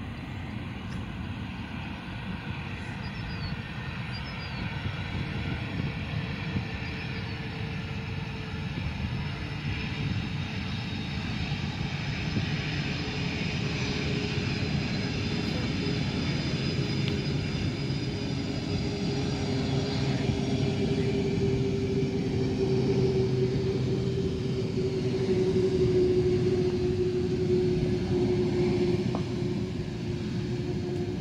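Jet engines of a KLM Boeing 747-400 running at low power as the four-engined airliner rolls along the runway, a steady roar with a high whine and a low hum that grows louder as it comes closer, loudest near the end.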